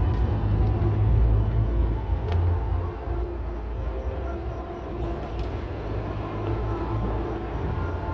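Distant fireworks: a continuous low rumble of overlapping booms, with a few faint sharper pops.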